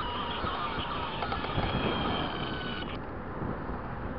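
Road and engine noise of a moving car heard from inside the cabin, with a high steady whine that cuts off sharply about three seconds in.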